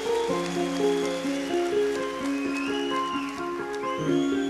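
Live progressive rock band playing an instrumental passage with no vocals: sustained chords changing about every half second, with high gliding notes above them.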